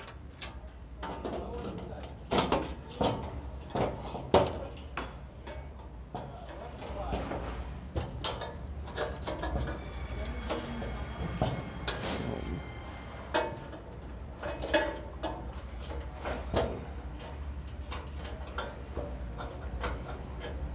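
Scattered metallic knocks and clicks at uneven intervals as a sheet-steel cover panel is handled and fitted over the cable compartment of a medium-voltage ring main unit cabinet, over a steady low hum.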